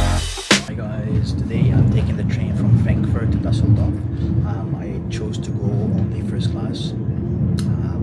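Steady low rumble of a moving Deutsche Bahn ICE train, heard from inside the passenger cabin, with faint speech over it. A short stretch of upbeat intro music cuts off about half a second in.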